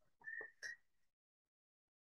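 Near silence in a pause between narrated sentences. In the first half-second there are a few faint short sounds and a thin, steady, high whistle-like tone.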